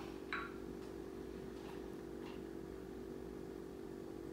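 Quiet room tone with a steady low electrical hum, and one brief faint sound about a third of a second in.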